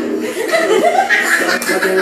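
Laughter: a person chuckling, mixed with a little voiced speech.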